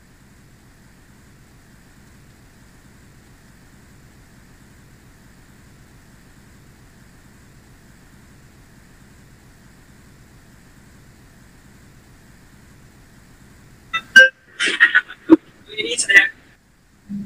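Faint steady hum and hiss from an open microphone on an online call, then about 14 seconds in a sharp click and a few short, loud bursts of a person's voice.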